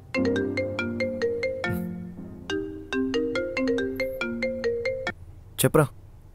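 Mobile phone ringtone ringing for an incoming call: a melody of short plucked, bell-like notes in two phrases with a brief gap about two seconds in, stopping about five seconds in as the call is answered. A brief loud sound follows just before the end.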